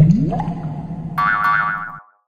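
Logo sound effect: a sudden start with a springy rising glide over a steady low hum, then about a second in a higher warbling tone joins before everything stops.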